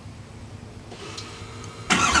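Quiet steady background with a faint click about a second in. Just before the end the truck's straight-piped LML Duramax V8 turbo-diesel starts up suddenly and loudly.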